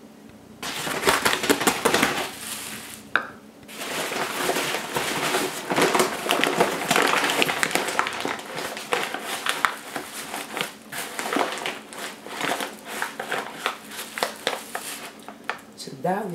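Plastic bag of all-purpose flour crinkling and rustling as it is handled, folded and clipped shut, with many small clicks. It starts about half a second in and runs almost continuously, with a brief lull about three seconds in.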